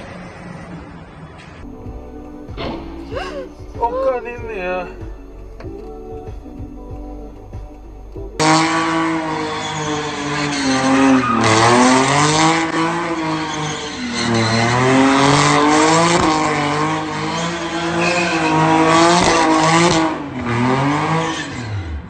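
A car doing donuts: from about eight seconds in, its engine revs up and down over and over while the tyres squeal against the road. Before that a quieter stretch holds only short snatches of sound.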